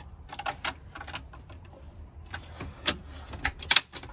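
Scattered light clicks and wooden knocks of a fold-out wooden desk top being handled on its folding metal shelf brackets, with a few sharper clacks in the second half.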